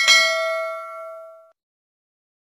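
Notification-bell chime sound effect for switching on a notification bell: a single bright ding, struck once and ringing down over about a second and a half.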